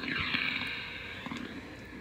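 A burst of steam hissing from a Rowenta steam-generator iron after its steam trigger has been pressed, fading away gradually.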